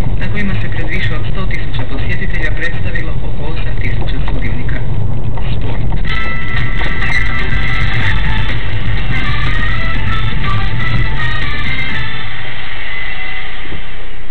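Car radio playing music over the steady low rumble of the car driving, heard inside the cabin; a held melody comes in about six seconds in.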